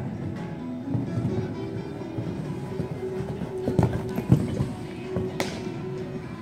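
Background music plays throughout, with a horse's hoofbeats cantering on sand arena footing, loudest about four seconds in, and a sharp knock about five and a half seconds in.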